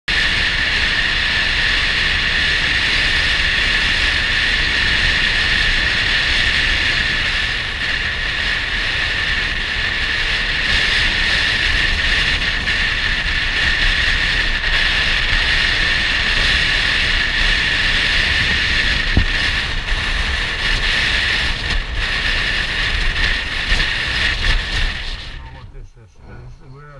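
Steady, loud running noise of a motorbike under way, engine and rushing air on the handlebar-mounted camera, cutting off abruptly near the end.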